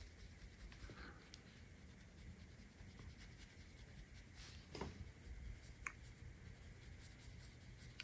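Faint rubbing of a terry cloth wiped around the brass bolsters and handle of a Buck 110 folding knife, with a few soft scrapes, against near silence.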